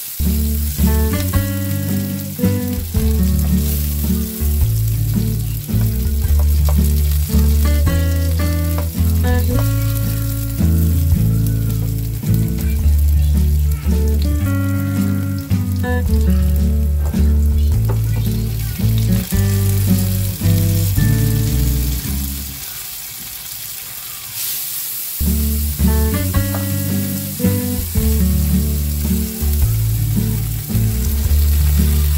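Background music with a steady beat over chopped garlic and red onion sizzling in oil in a non-stick frying pan as they are stirred. The music drops out for a couple of seconds about three-quarters of the way through, and the sizzling gets louder around then.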